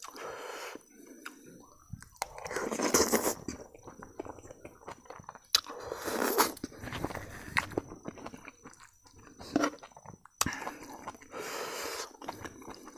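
Close-up eating sounds: a person chewing mouthfuls of rice with dal and a wild mushroom and chayote fry, in irregular bursts, with a few sharp clicks.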